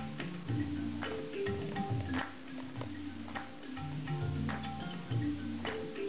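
Live acoustic trio music: tabla drumming, with a sharp stroke about every second, over plucked melodic notes from a kora and an mbira and sustained low notes.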